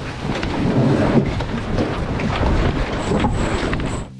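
Wind buffeting an onboard microphone, with water rushing along the hull of an E Scow sailboat under way. It is a steady, loud rumble.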